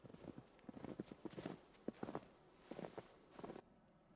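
Faint footsteps crunching through snow at a walking pace, stopping shortly before the end.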